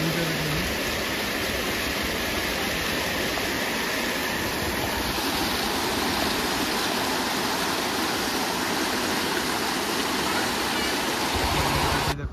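Turbulent water of the Mahanadi river rushing and churning through a line of white water, a loud, steady rush. It cuts off suddenly at the end.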